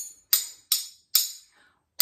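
A metal fork and spoon tapped together in a steady rhythm: three bright, sharp clinks in the first second and a half, evenly spaced, keeping the beat of the rhyme.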